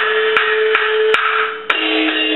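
Traditional Chinese shadow-play accompaniment: five sharp wood-block strikes in a steady beat over a held note that steps down in pitch near the end.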